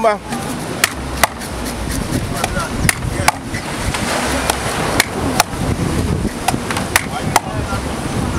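A heavy knife chopping through a whole mahi mahi on a wooden cutting table: about nine sharp chops, mostly in quick pairs every couple of seconds.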